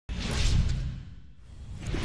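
Whoosh sound effects of an animated sports-highlight intro graphic, with a deep rumble underneath: one swell peaks about half a second in and fades away, and a second one builds near the end.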